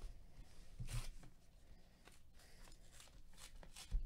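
Printed paper being torn and peeled off a cardboard box in several short rips, with a bump near the end.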